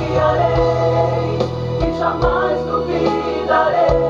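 A small mixed group of male and female voices singing gospel backing harmonies together, with instrumental accompaniment that has a steady bass line.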